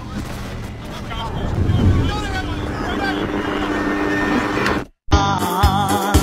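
Film soundtrack of a car driving: a low steady rumble with faint voices and wavering tones over it. It cuts out for a moment about five seconds in, and upbeat disco-funk music with a strong steady beat starts.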